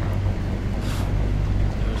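Steady low rumble with a brief hiss about a second in.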